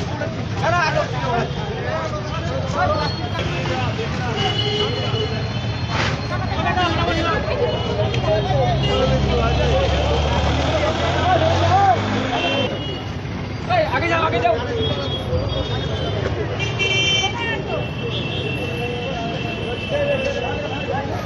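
Busy street with a crowd of men talking and calling out over each other, and road traffic behind. A heavy vehicle's engine rumbles louder from about eight to twelve seconds in, and short high horn toots sound at several points, most often near the end.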